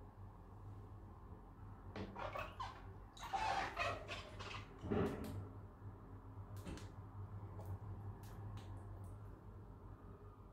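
Handling sounds of a wet phone being taken out of a jug of water and held: a few seconds of rustling and knocks, the loudest about three and a half and five seconds in, then scattered light clicks.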